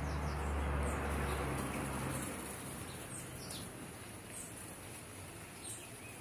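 A few faint, short, high bird chirps, spread several seconds apart over steady background noise, with a low hum during the first two seconds.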